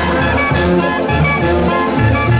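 Live Mexican banda playing an instrumental brass passage, with trombones and a sousaphone, amplified through a PA.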